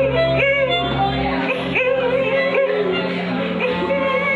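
Live band music: a singing voice with repeated upward-sliding, yodel-like notes over electric guitar and a low held drone, the drone cutting off about a second and a half in.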